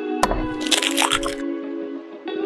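A small egg cracked with a sharp tap about a quarter second in, then its shell crackling as it is broken open into a small glass bowl, over background music.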